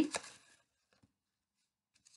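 Near silence: quiet room tone in a pause between spoken words.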